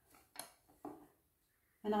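A light, sharp click about half a second in as a small palette knife is set down on a tabletop, in an otherwise quiet room. A woman's voice starts just before the end.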